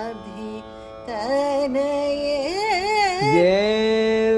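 A man singing Carnatic phrases in raga Vasanta, the notes wavering and sliding in gamaka ornaments, over a steady drone. He breaks off briefly near the start, resumes about a second in, and settles into a long held note near the end.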